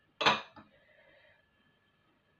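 A single sharp clink of kitchenware about a quarter second in, followed by a smaller knock.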